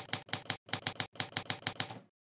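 Typewriter keys clacking in a quick run, about six strikes a second with two short pauses, as the title is typed out letter by letter.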